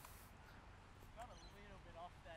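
Near silence: faint outdoor background, with a few faint, brief pitched sounds a little after a second in.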